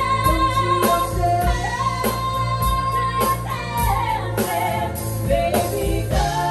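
Two women singing long held notes in harmony, with vibrato, over a live band with a steady drum beat and bass: a musical-theatre ballad performed live.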